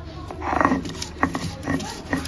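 A short pitched cry about half a second in, then a few sharp knocks of a stone grinding roller against a stone grinding slab as grinding begins.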